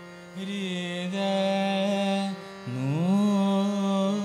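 Male Hindustani classical vocal in Raag Chhaya Nat over a steady tanpura drone. The voice enters about half a second in on a held note, breaks off briefly, then glides up into a long, slightly wavering note.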